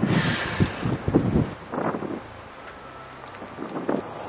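Wind buffeting the microphone outdoors, strongest at the start, with a few soft low thumps in the first second and a half.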